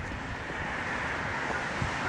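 Steady hiss of passing traffic, tyres on a wet road, growing slightly louder through the moment.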